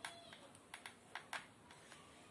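A few faint, light clicks and taps, about six, scattered irregularly over a quiet background hiss.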